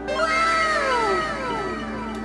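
An edited-in pitched sound effect: several overlapping tones that start about a quarter second in, swell briefly and slide down in pitch over about a second and a half, laid over background music.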